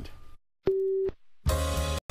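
A single steady electronic beep lasting about half a second, then a music sting starting about a second and a half in, opening a TV segment intro.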